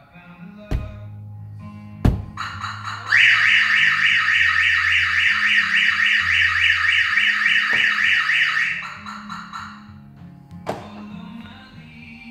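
Two knocks as the van body is nudged, then the Clifford 330X van alarm's siren sounds a loud, rapidly pulsing high-pitched wail for about six seconds before stopping. Its built-in shock sensor has been set off.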